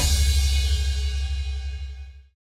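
A rock band's final hit ringing out: a cymbal wash and a low bass note fading away over about two seconds, then stopping.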